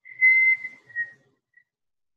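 A person whistling a few short notes: a longer steady note, then a slightly lower shorter one, then a brief faint one.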